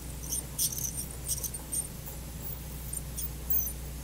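Satelec P5 Neutron piezoelectric ultrasonic scaler with an H3 tip, on its low power setting, working against a plastic typodont tooth: irregular high-pitched squeaks and chirps as the tip moves. It is a sound the tip makes only on the typodont.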